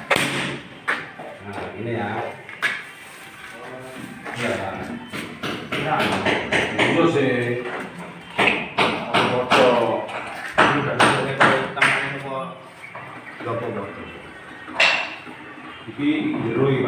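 Scattered sharp knocks and thumps on a large wooden door panel being handled on a tiled floor, some in quick clusters, among men's voices.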